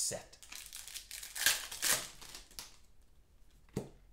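A trading-card pack wrapper being torn open and crinkled by hand, with the sharpest rustles about a second and a half and two seconds in.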